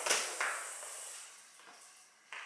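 Upholstered modular couch section pushed across a hardwood floor: a scrape right at the start and a second, shorter one about half a second in, fading away.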